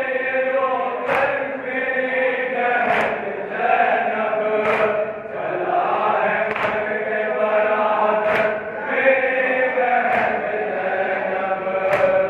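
A crowd of men chanting a noha in unison, with a sharp beat of matam, hands striking chests together, about every two seconds.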